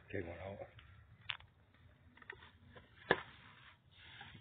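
A few sharp clicks and taps from handling a plastic bait bucket and its lid, the strongest about a second in and near the end, over an otherwise quiet background.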